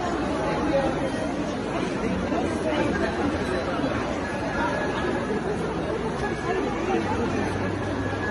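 Crowd chatter: many people talking at once, a steady babble of shoppers with no single voice standing out.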